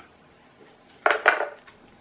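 A short scrape and rustle of cardboard packaging being handled about a second in, lasting about half a second.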